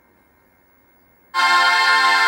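Quiet at first, then about a second and a half in a Bulgarian women's folk choir comes in on a loud, steady held chord of many voices.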